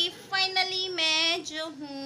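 A high singing voice holding long, drawn-out notes, with a short spoken word near the end.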